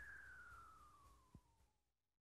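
Faint single electronic tone at the very end of a late-1980s house track, gliding steadily down in pitch and fading out, with a soft click shortly before it dies away.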